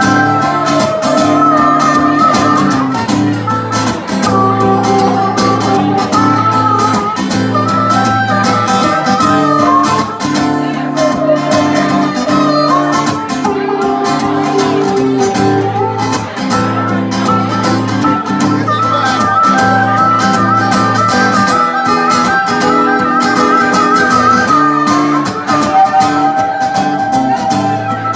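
Harmonica solo over a strummed acoustic guitar: an instrumental break between sung verses, the harmonica playing long, bending held notes while the guitar keeps a steady strum.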